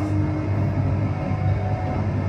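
Low, steady rumble from a rock band's stage amplifiers and bass, with a faint held note ringing, in a short gap in the playing.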